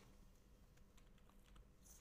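Faint computer keyboard typing: a few soft keystrokes as a short word is typed.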